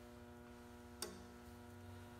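Near silence with a steady electrical hum, broken by a single sharp click about a second in from the dial indicator being handled.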